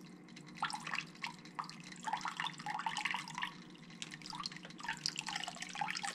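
Water dripping and splashing in an aquarium, in many small irregular drips, over a low steady hum.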